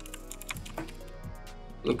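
Typing on a computer keyboard: a quick run of light key clicks as a short phrase is entered.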